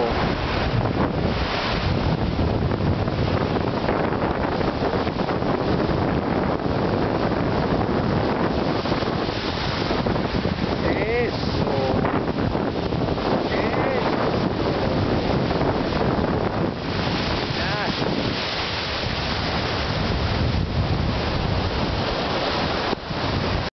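Ocean surf breaking and washing up the beach in a steady, loud rush, with wind buffeting the microphone throughout.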